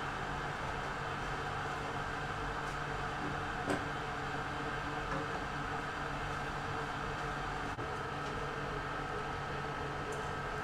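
Steady kitchen hum and hiss from machinery such as a ventilation fan and the lit gas burner, with one light click about four seconds in.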